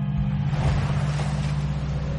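Intro sound design: a whooshing noise swell that rises, peaks about a second in and fades, over a steady low droning music chord.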